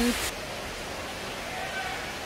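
Steady rushing noise of distant falling water, with a faint voice briefly near the end.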